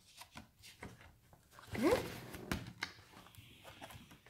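Thick paper pages and card flaps of a picture book being handled and a page turned: soft rustles with a few light clicks.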